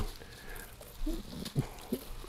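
Faint handling sounds of pulled pork being broken apart by hand on a parchment-lined metal tray, with a few light ticks in the second half. There is a short, low voiced sound from the man about a second in.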